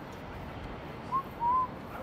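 Two short whistled notes about a second in, the first brief and the second longer with a rise and fall in pitch, over steady street noise.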